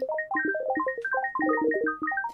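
A dense, quick scatter of short, bright synth pluck notes at many different pitches, several every second, each dying away fast: a sparkling 'twinkle' pattern of randomized notes on an FM synth pluck patch.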